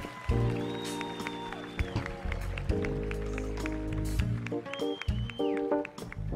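Live band music without vocals: sustained keyboard chords over bass guitar and drums, with a steady beat of drum and cymbal hits.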